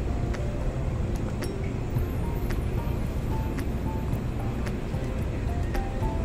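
Steady low road and engine rumble inside the cabin of a moving car. Over it runs soft music: a slow line of single high notes with faint ticks.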